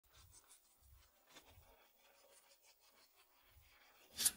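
Near silence before the vocals start.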